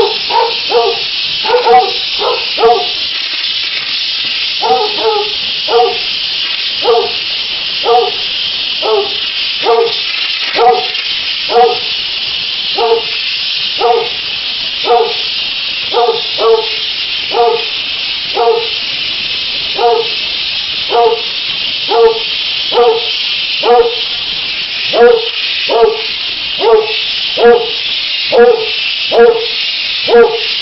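Steam cleaner jetting steam onto a tile floor with a steady hiss. Over it, a dog gives short whimpering yelps, about one a second.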